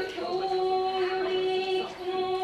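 Kagura chanting: a single voice holding long, steady sung notes with almost no change in pitch.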